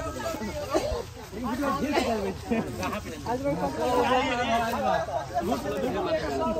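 Men's voices talking and chattering in a group, with overlapping, indistinct speech.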